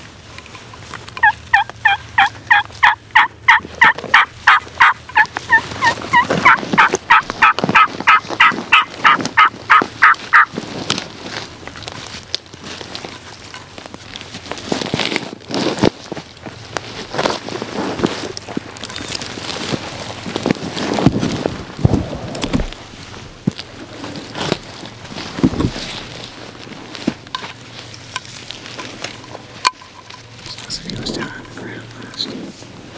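Wild turkey call: a long, fast run of yelps, about four notes a second for roughly nine seconds. After it comes rustling with scattered knocks.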